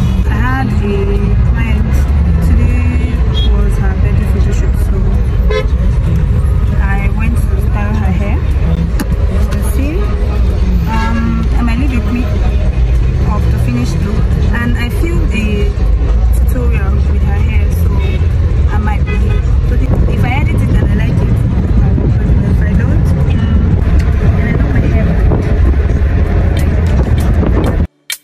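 Steady loud low rumble of road and engine noise inside a car in traffic, with car horns tooting briefly now and then.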